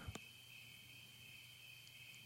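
Near silence, with a faint, steady high-pitched chirring of insects in the background.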